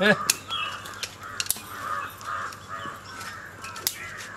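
Crows cawing in a series of harsh, repeated calls, with a few sharp clicks scattered through.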